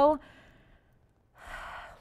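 A woman's sentence trails off, and after a short pause she takes one audible breath, about half a second long, near the end.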